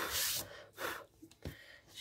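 A short, hissy breath out, then a fainter breath just before the first second, and a light tap about one and a half seconds in.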